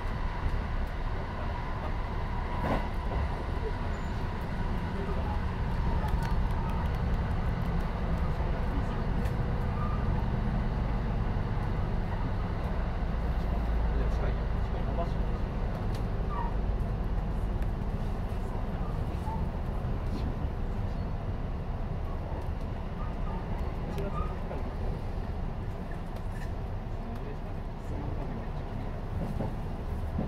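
Running noise inside a JR West 223-1000 series electric train at speed: a steady low rumble of wheels on rail, with a faint steady high tone for the first several seconds, easing a little near the end.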